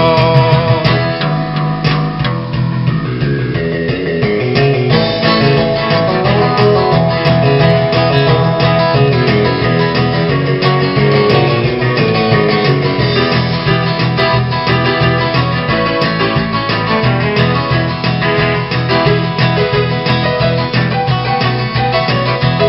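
Instrumental break in a classic country song: acoustic guitar strumming over a steady bass line and backing accompaniment, with no singing.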